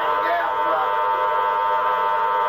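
Spiricom device putting out its steady electronic drone of many fixed tones sounding together, with a brief voice-like warble about a quarter second in.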